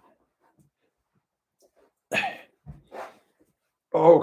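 A man clearing his throat once, about two seconds in, followed by two shorter, softer throat sounds.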